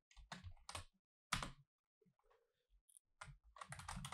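Faint typing on a computer keyboard: a few separate keystrokes, a pause of about a second and a half, then a quick run of keys near the end.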